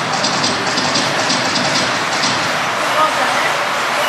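A pack of 1/10-scale 2WD modified-class electric RC buggies racing together, their motors and tyres making a steady wash of noise, with a fast ticking in the first couple of seconds.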